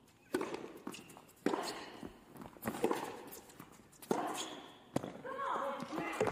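Tennis rally: the ball is struck by rackets about five times, a little over a second apart, each sharp pop followed by a player's grunt. Near the end a voice calls out.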